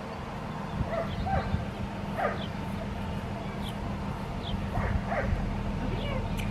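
A dog yipping: several short, high-pitched yips scattered through, over a steady low hum.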